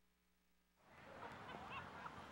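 Near silence as the music ends, then from about a second in a faint hiss of background noise with a few faint squeaky notes.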